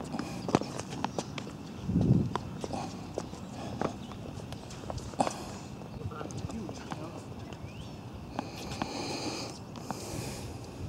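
Tennis rally on an outdoor hard court: irregular sharp knocks of racket strikes and ball bounces.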